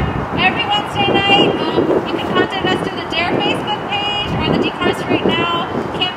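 Car horns honking in short blasts over shouting voices and street noise.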